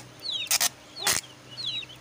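Aseel chicks peeping: repeated short high calls, each falling in pitch. Two brief handling noises come about half a second and a second in.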